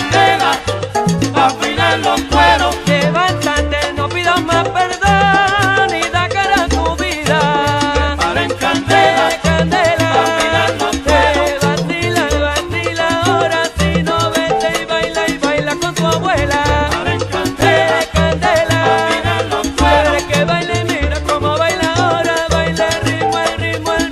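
Salsa music in an instrumental stretch without singing: a bass line repeating short notes on a steady beat under percussion and melodic instrument lines.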